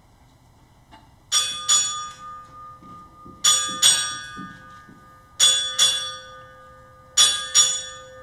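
Ship's bell struck in four pairs, eight strikes in all, each pair ringing on before the next. These are the naval honors rung for a departing flag officer, the pairs announcing the Chief of Naval Operations.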